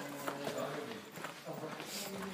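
Footsteps on a hard floor, a few short knocks, with faint voices behind them.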